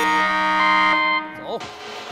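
A steady electronic alarm buzz of several held pitches that cuts off a little over a second in, followed by voices.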